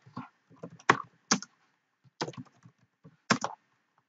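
Typing on a computer keyboard: scattered, irregular keystrokes, a few of them louder than the rest.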